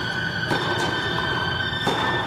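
Tennis ball struck twice by rackets in a rally: two sharp pops just over a second apart. Behind them runs a steady high-pitched whine.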